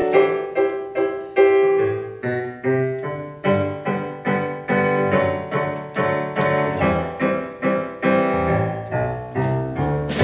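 Live keyboard intro: piano chords struck in a steady rhythm, each ringing and fading, with low bass notes coming in about two seconds in.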